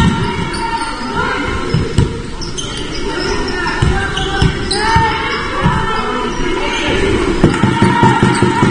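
Basketball bouncing on a wooden sports-hall floor in a run of irregular thuds, echoing in a large hall, with players' voices calling.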